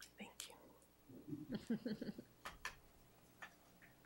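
Faint voices talking quietly away from the microphone, with a few light clicks, two of them about two and a half seconds in.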